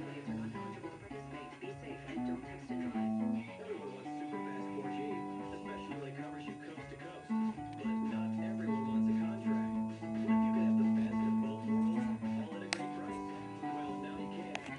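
Electric guitar picked in single-note lines, with some notes held and ringing for a second or more, and a couple of sharp clicks near the end.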